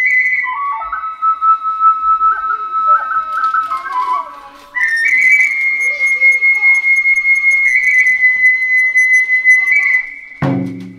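Solo kagura flute (fue), a Japanese side-blown flute, playing an Iwami kagura melody. It holds a long high note, then plays a phrase stepping down through lower notes, breaks off briefly about four and a half seconds in, and returns to another long high held note to the end.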